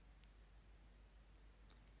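Near silence: room tone, with one faint click about a quarter second in.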